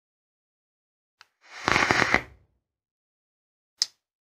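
Vaping: a crackling, sputtering puff lasting about a second, with a faint click before it and a sharper click near the end.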